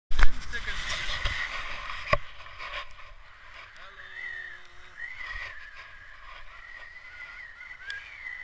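Wind rushing over an action camera's microphone in paragliding flight, loudest in the first couple of seconds, with a few sharp knocks of the camera mount early on. A thin wavering whistle runs through the second half.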